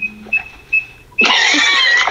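Four short, high electronic beeps about a third of a second apart, then a loud, shrill, noisy sound starting a little over a second in.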